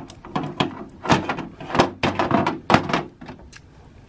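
Hard plastic action-figure parts clicking and knocking as a sword is pulled from the figure's hand and handled with its connector piece: a string of sharp, separate clicks and taps.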